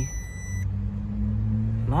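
Power Probe ECT3000 circuit tracer receiver's high-pitched steady signal tone, cutting off about half a second in as the probe passes the point where the traced wire is broken. A low steady hum continues after the tone stops.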